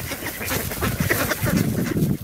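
A flock of mallard ducks quacking close by, crowding in to feed. Their calls come thick and overlapping, busiest in the second half, with short clicks and rustles from feet and bills in dry leaves.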